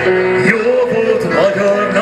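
Live music: a man singing a Hungarian song into a microphone over instrumental accompaniment.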